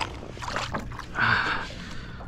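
A short splash about a second in, as a bluefish goes into the water beside a kayak, with a few light knocks and water sounds before it.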